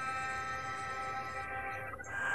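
Soft instrumental background music: a quiet sustained chord held steady, cutting off near the end.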